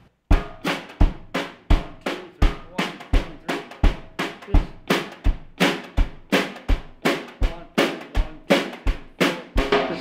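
Drum kit played with nylon brushes: a bass drum thump about every 0.7 s with sharp snare strokes between, a simple, steady beat repeated unchanged.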